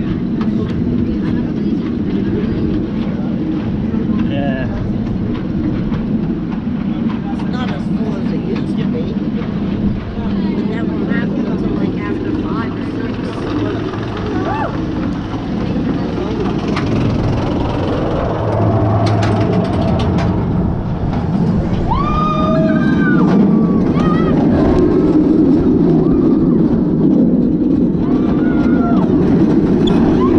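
Montu inverted roller coaster train climbing its chain lift hill: a steady mechanical rumble with scattered clicks, growing louder over the last several seconds as it nears the top.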